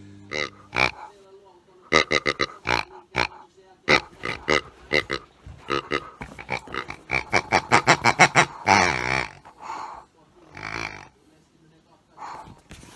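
Rubber squeeze-toy pigs squeezed by hand, giving a quick run of short pitched oinks and squeaks, about three or four a second, then a few longer drawn-out ones near the end.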